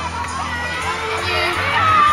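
Crowd of fans screaming and cheering, many high voices overlapping, with music playing underneath.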